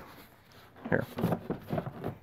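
A man's short grunts and voice from about a second in, as he strains to press a stuffed synthetic sleeping bag down into a hard-shell motorcycle side case.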